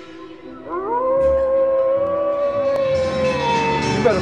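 A single long howl: it rises in pitch about half a second in, holds one steady note for about three seconds, and sags slightly near the end.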